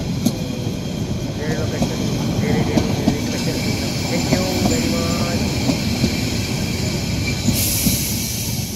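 Steam train passenger carriages rolling slowly past on the rails, a steady rumble with wheel clicks over the track. A hiss comes in partway through and grows loud near the end.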